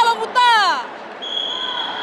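High-pitched shouts and whoops from spectators, with sweeping rises and falls in pitch, breaking off under a second in. A steady high-pitched tone follows and holds.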